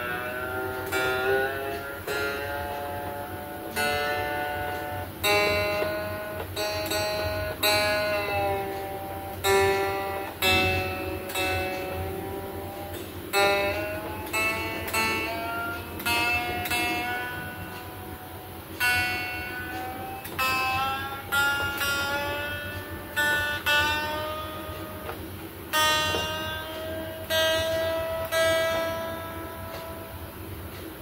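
Handmade electric guitar with a Telecaster body and neck and a Stratocaster-style tremolo, its single notes and chords plucked one after another, each ringing and fading, about one or two a second. It is being test-played after its wiring has been finished.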